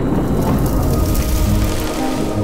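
Thunder rumbling with rain falling, a storm sound effect mixed with music.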